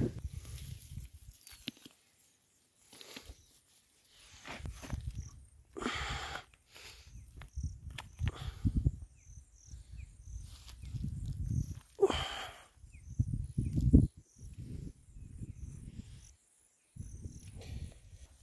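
Irregular thuds and scuffs as rocks are packed into the soil around the root of a young cashew tree to hold it upright.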